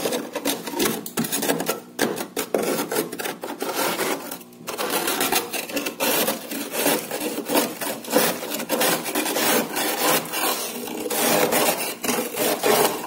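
A metal spoon scraping thick frost off the upper inside wall of a freezer, in quick repeated strokes with a short pause about four and a half seconds in.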